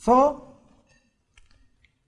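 A man says "so", then a few faint, short clicks near the end: a whiteboard marker's cap being snapped on.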